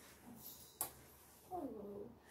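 A sharp kiss smack about a second in, then a woman's short whimpering cry that falls in pitch, an emotional sob during a tearful embrace.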